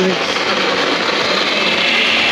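Countertop blender running steadily, mixing a frozen drink.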